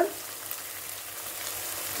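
Thick tomato-and-cream masala gravy sizzling steadily in a non-stick pan, with faint scattered crackles; the oil has separated from the gravy, the sign that the masala is well cooked.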